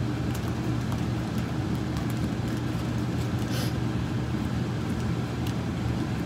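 Faint rustling of a small plastic candy bag being opened, with a short crinkle about three and a half seconds in, over a steady low background hum.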